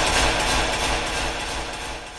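A transition sound effect between segments: a noisy, crash-like hit that starts suddenly and slowly fades away over about two seconds.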